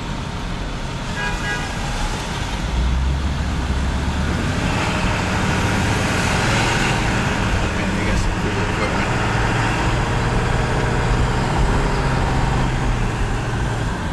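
Vehicle engine and road noise heard from inside the cab in city traffic, growing louder a few seconds in as it pulls away. A brief horn toot sounds about a second in.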